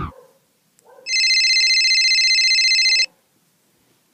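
Mobile phone ringtone: a single trilling electronic ring lasting about two seconds, signalling an incoming call.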